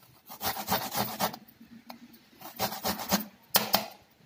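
Whole amla (Indian gooseberry) rubbed back and forth on a small metal hand grater over a steel plate: rasping grating strokes in three bursts, the last short and sharp.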